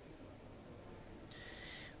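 Faint background room tone, with a short high hiss near the end.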